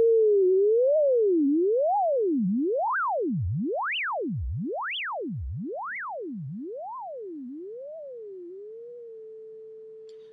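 Logic's ES2 software synthesizer holds one clean, single tone while LFO 1 swings the pitch of oscillator 1 up and down about once a second. As the mod wheel is turned up, the swings widen into deep swoops from very low to very high, then narrow again until the note is steady near the end. The note fades slowly throughout.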